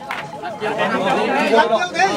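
Several people talking at once, overlapping voices with no single clear speaker.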